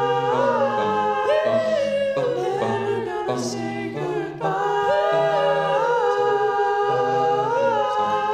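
Five-voice male a cappella group singing close harmony: held chords in the upper voices that shift every second or so, over a sung bass line.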